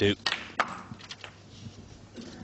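Snooker cue tip striking the cue ball with a sharp click, then a second click about a third of a second later as the cue ball strikes the black, followed by a few fainter knocks.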